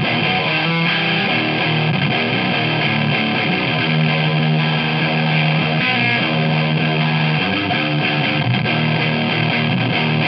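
Electric guitar played through a Golden Guillotine overdrive pedal, a modded DOD 250, giving a heavily distorted sound. Chords ring out and are held for a second or two each.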